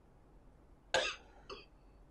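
A person's short cough or clearing of the throat about a second in, followed by a smaller throat sound half a second later, picked up close on a lapel microphone.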